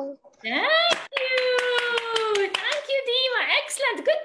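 A high voice holding one long drawn-out call that slides slightly down, with rapid hand clapping running through it, followed by shorter high vocal sounds.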